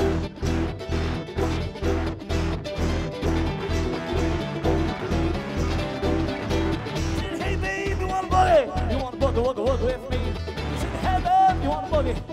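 Live bluegrass band playing an up-tempo jam: mandolin and banjo picking over a steady driving beat of upright bass and drums. About seven or eight seconds in, a voice comes in with sliding, wailing vocal lines.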